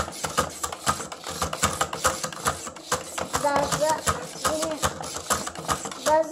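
Hasbro Fantastic Gymnastics toy's plastic lever-and-gear mechanism clattering in rapid, continuous clicks as its yellow button is pumped over and over to swing the gymnast figure around the bar.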